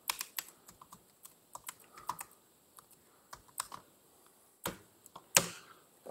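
Laptop keyboard being typed on: irregular, scattered key clicks as a command is entered, with two louder key strikes about five seconds in.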